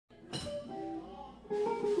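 Guitar plucked in a few loose notes, with a louder attack about one and a half seconds in: a pitch check before the song.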